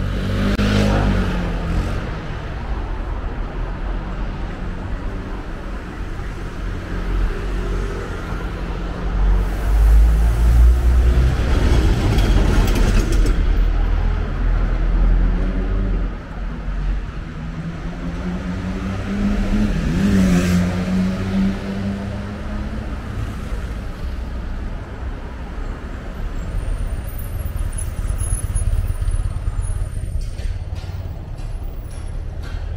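Street traffic: a steady low rumble of motor vehicles with several cars driving past close by, their engine sound swelling and fading, loudest about a third of the way in and again about two-thirds in.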